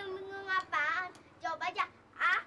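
A young girl singing in short phrases, opening on one long held note.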